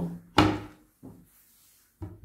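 A single sharp knock on a plastic cutting board, with a fainter tap about a second later, as a tomato is handled on it before slicing.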